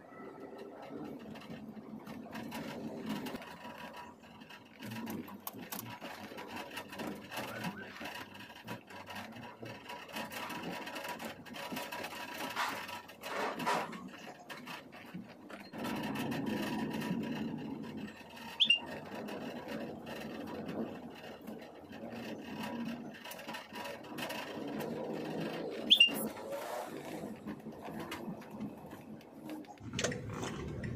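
Traffic and street noise heard from inside a slowly moving car, an uneven murmur and rumble with no words. Two short, high-pitched chirps stand out, one about two-thirds of the way through and another a few seconds later.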